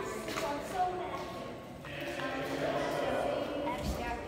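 Indistinct voices talking inside a stone fort corridor, with footsteps as people walk through.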